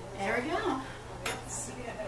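A single sharp clink of a small metal pottery tool against a hard surface a little over a second in, after a brief voice at the start, with a low steady hum underneath.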